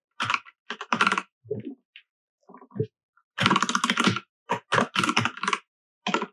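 Computer keyboard typing in irregular bursts of keystrokes, with a fast, dense run in the second half.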